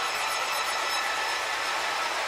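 House music DJ mix in a breakdown with the bass and kick drum filtered out, leaving a steady hiss-like wash with faint held tones.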